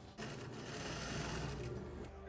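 Industrial sewing machine running steadily, a fast, even rattle of stitching.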